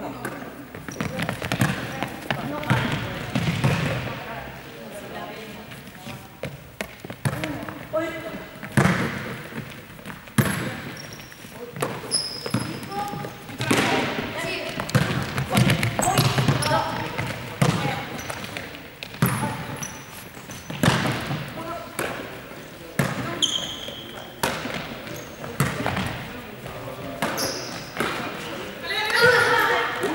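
A ball being hit and bouncing on a sports-hall floor again and again, each knock echoing in the large hall, amid players' voices.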